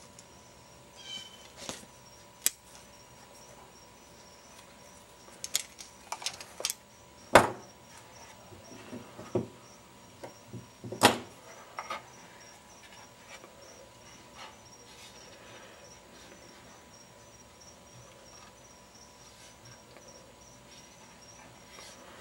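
Bonsai scissors snipping leaves off a green island ficus: a scatter of sharp clicks and snaps over the first half, the loudest about seven and eleven seconds in.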